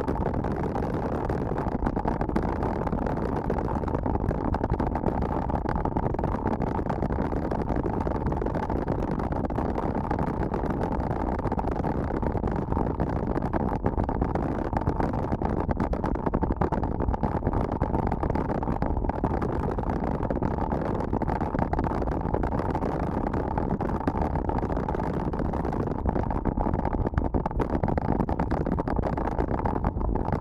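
Steady wind rumble on an action camera's microphone from riding a mountain bike at about 35 km/h, mixed with the tyres rolling over a dirt road. The noise is even throughout, with no breaks.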